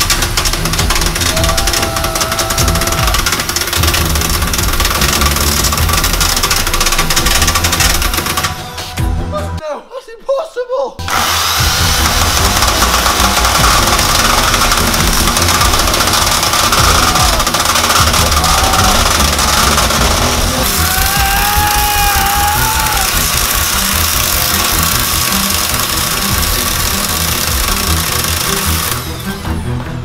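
Corded electric chainsaw running, its chain grinding against the steel top of a safe, with music playing over it. The sound cuts out briefly about ten seconds in, then resumes.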